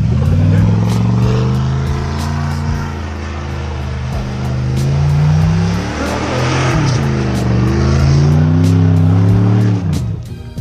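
Pickup truck engine revving hard and rising and falling in pitch as the truck spins donuts in deep snow. The revs climb over the first couple of seconds, dip briefly past the middle, then climb again.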